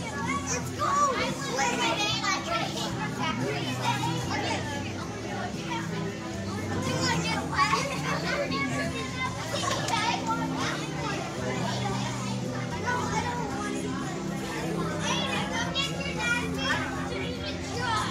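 A crowd of children playing, shouting and squealing, with many voices overlapping and music playing underneath.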